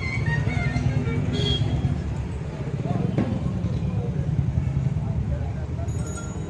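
Mixed outdoor background of indistinct voices and music over a steady low rumble, with one short sharp knock about three seconds in.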